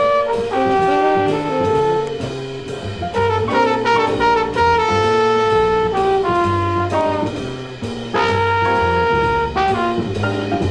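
Live jazz ensemble of saxophones, trumpet, cornet and trombone playing long held notes together over bass and drums. The horns drop out briefly and come back in together about eight seconds in.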